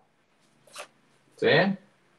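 A single brief scratch of a felt-tip marker on a whiteboard, finishing a written word.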